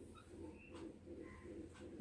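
Near silence, with faint low bird calls repeating softly in the background.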